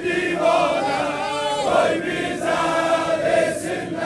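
A crowd of men singing an Azeri-language Shia mourning elegy (mersiye) together, in long drawn-out notes, with a wavering, ornamented passage about a second in.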